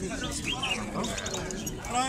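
People's voices talking in the background, with caged songbirds giving short chirps now and then.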